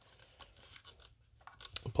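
Faint handling noise of a plastic flashlight body and charging cable, with a few small clicks near the end as the charger plug is pushed into the light's charging port.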